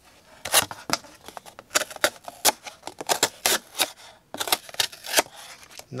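Bear Ops Bear Swipe IV folding knife's tanto blade slicing corrugated cardboard, about a dozen short cutting strokes in quick, irregular groups.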